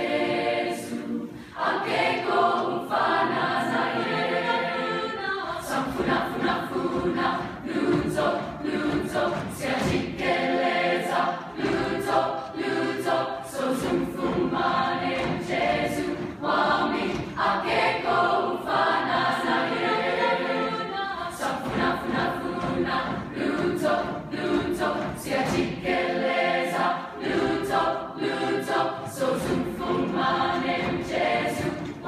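A large mixed choir of teenage girls' and boys' voices singing together, in sustained phrases a few seconds long with short breaks between them.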